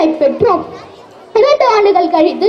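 Speech only: a boy speaking loudly in Tamil into a microphone, breaking off for a moment near the middle.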